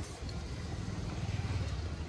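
Low rumble of an aerial ropeway cabin moving through its station, with the haul-rope machinery running, swelling a little past the middle.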